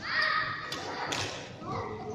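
Badminton play in a sports hall: a short high squeal at the start, then a couple of sharp taps of rackets striking shuttlecocks and thuds on the wooden court floor, all ringing in the large room.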